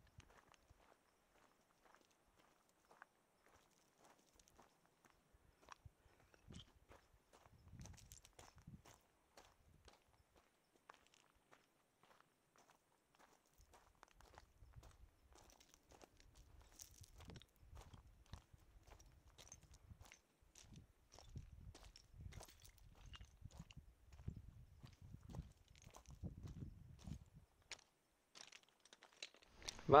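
Faint footsteps crunching over loose shale and stones, an irregular run of small clicks and scrapes. Low rumbles come and go, mostly in the second half.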